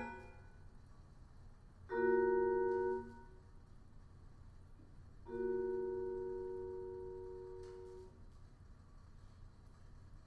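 Vibraphone playing two sparse three-note chords: the first rings for about a second and is cut off short, and the second, about three seconds later, rings and fades for nearly three seconds before it is cut off.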